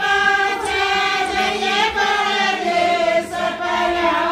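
A group of women singing a jakdi, a women's wedding folk song, together in unison, in long held notes that bend up and down.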